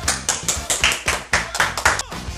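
Hands clapping quickly and repeatedly, about five claps a second, over background music.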